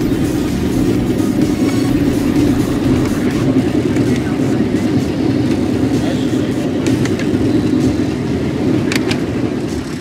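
Dirt-track race car engines running loudly and steadily, with a few sharp knocks near the end from sheet metal being worked on a race car's damaged nose panel.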